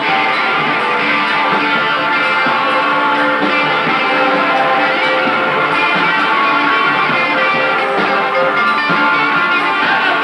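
Live rock band playing, with electric guitar to the fore; the music is loud and continuous.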